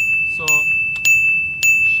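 A bright ding sound effect at one steady pitch, struck four times about every 0.6 seconds, each ring running on into the next.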